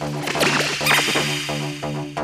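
Electronic dance music playing through a festival sound system, with a loud swooshing sweep cutting through the beat from about half a second in and peaking near one second.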